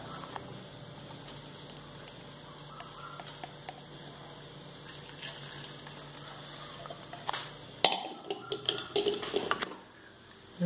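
Faint trickle of dark syrup poured through a plastic mesh strainer into a steel bowl, over a steady low kitchen hum. Near the end come a few sharp knocks and clatters of kitchen utensils.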